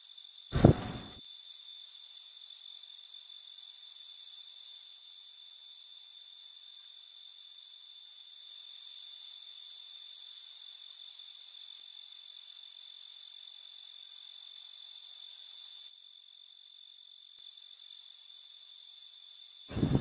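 Insects buzzing steadily in a high shrill drone, with a single short knock about half a second in.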